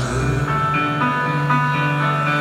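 A live band plays an instrumental passage between sung lines, led by an acoustic guitar, with held notes that change about every half second over a steady low note.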